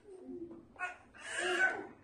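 Brief, faint voice sounds from a man between spoken phrases, a couple of short murmurs, then a louder breathy sound just before he speaks again.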